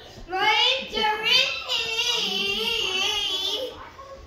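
A young girl singing in a high voice, the pitch bending through a short phrase and then holding a long wavering note in the second half.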